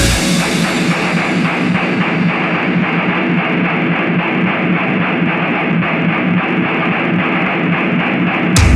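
Heavy metal instrumental passage of guitars and drums with no vocals. The low end is cut out and the highs fade away steadily, so the mix sounds thin and increasingly muffled.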